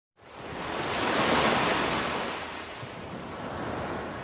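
A rush of noise like breaking surf. It swells up over the first second and a half, then eases off to a lower, steady wash.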